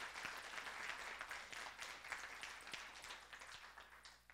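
Audience applauding, the clapping tapering off near the end.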